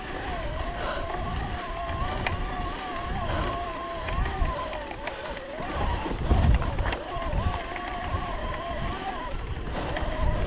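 Electric mountain bike's motor whining under pedalling load on a climb, its pitch wavering as the pedalling speed changes. Beneath it, tyres on a rough stony track and wind buffeting, with a louder jolt about six and a half seconds in.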